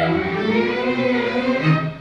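Symphony orchestra strings, violins and cellos, playing held notes after a soprano's sung phrase ends, dying away near the end.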